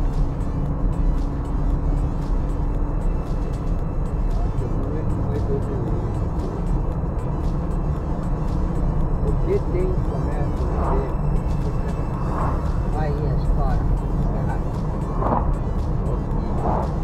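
Steady low road and engine rumble heard from inside a car driving along an asphalt highway.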